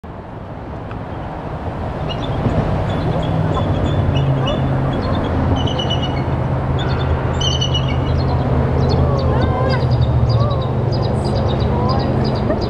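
A bald eagle pair calling back and forth in series of short, high-pitched chattering notes. The notes start about two seconds in and grow quicker near the end. This is the pair's calling just before they mate. A steady low rumble runs underneath.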